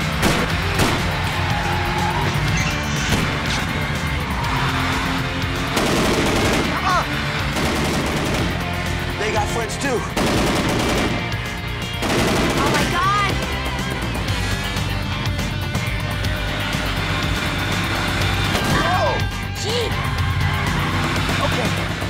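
Action-chase soundtrack: car engines and tyre squeals over music with steady low notes, broken by rapid bursts of what sounds like automatic gunfire about six and nine seconds in.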